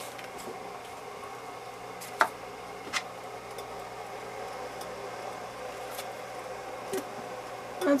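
Light handling sounds of a cotton candle wick and a small wooden wick block: two short clicks about two and three seconds in and a few fainter ones later, as the block is handled and set down on a wooden board, over a steady low hum.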